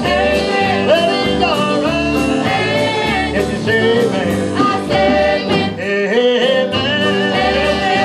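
Live country-gospel band music: electric guitar and keyboard over a steady bass pulse, with a voice singing the melody.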